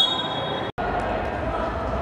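Referee's whistle blown in one steady high note that stops under a second in, followed by a brief dropout of all sound. Afterwards, players' voices echo in a large indoor hall.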